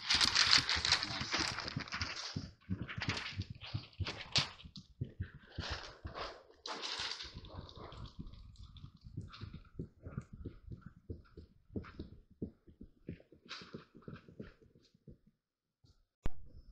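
Hand seam roller worked back and forth under firm pressure over the seam tape of an EPDM rubber roof lap, pressing the tape down to bond it. A run of rubbing, scraping strokes with scattered knocks, heaviest in the first two seconds, then lighter and more broken.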